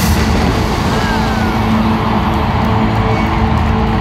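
Loud concert music from a stadium sound system over a cheering crowd. It swells suddenly at the start, then runs on with steady held notes.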